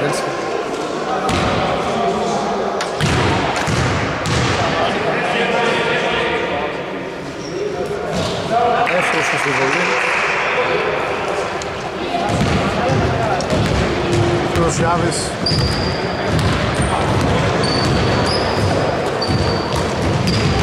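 A basketball bouncing on a hardwood gym floor during play, with players' voices echoing around the large hall.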